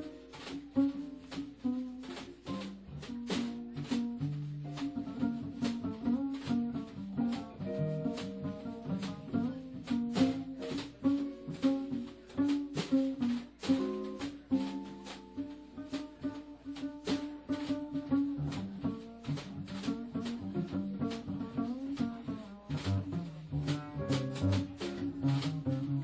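Small jazz combo of tenor saxophone, guitar, bass and drum kit playing live: a melodic line over a bass line, with steady cymbal strokes from the drums.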